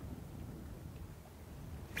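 Steady low rumble of wind on the microphone over open water, with no distinct events.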